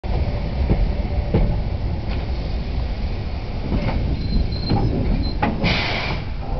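Narrow-gauge steam train pulling away, heard from a carriage: a steady low rumble of the running gear with irregular exhaust beats, a brief high squeal a little after four seconds in, and a louder burst of noise near the end.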